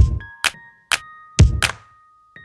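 Short electronic outro jingle: five deep thuds about two a second, with bright bell-like tones ringing on between them.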